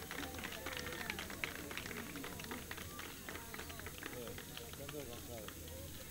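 Faint, scattered clapping from a small group, thinning out over a few seconds, with indistinct voices chatting in the background.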